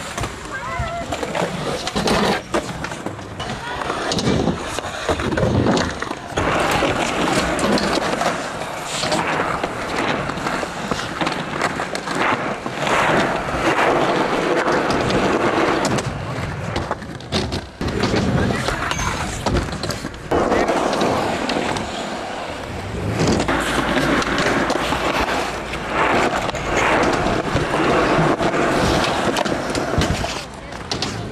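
Skateboard wheels rolling on concrete, broken by repeated sharp clacks of boards popping, striking a ledge and landing.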